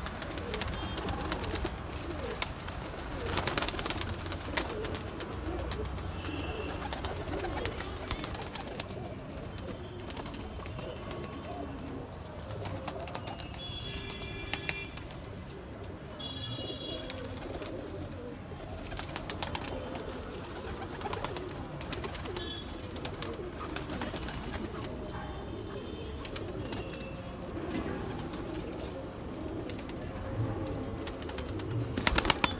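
Domestic pigeons cooing continuously, with scattered clicks and rustles and a few short high chirps near the middle.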